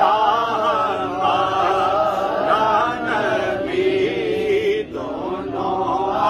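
A man reciting a naat, a devotional Urdu poem, in long, held, melodic lines with no instruments. The voice breaks briefly about five seconds in.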